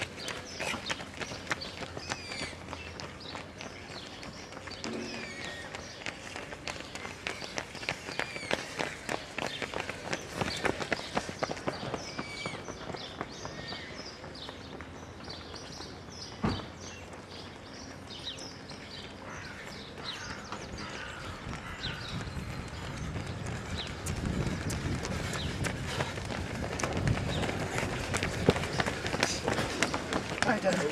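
Running footsteps slapping on a paved path as runners pass, with birds chirping. Near the end a group of runners approaches and the sound of their feet grows louder.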